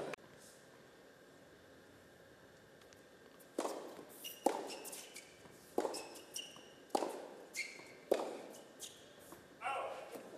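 Near silence for about three seconds, then a tennis rally on an indoor court. Racket strikes on the ball come about once a second, with short high squeaks of tennis shoes on the court between them.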